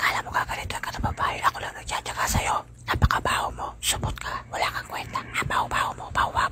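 A person whispering in a quick run of breathy phrases.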